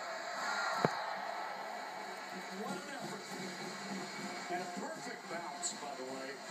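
Indistinct voices over a steady background, as from a television broadcast, with one sharp knock just under a second in.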